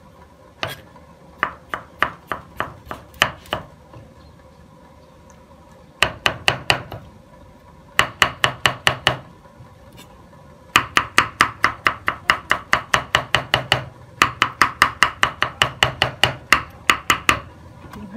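Chef's knife chopping peeled aloe vera gel on a round wooden chopping board: sharp knocks of the blade on the wood in several quick runs of about four a second, with short pauses between them.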